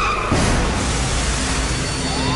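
A steady rushing noise rises about a third of a second in and holds, with a low hum beneath it.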